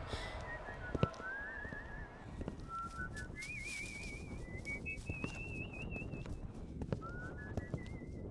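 A person whistling a slow tune, the notes wavering with vibrato as the melody steps up and down. A sharp knock comes about a second in and another near the end.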